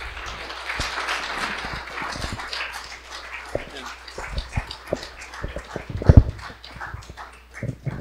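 Audience applauding, densest over the first few seconds and then thinning to scattered claps. A couple of loud low thumps come about six seconds in.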